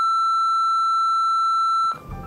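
A steady electronic beep, one high pure tone held at an even level, cutting off abruptly just before the end.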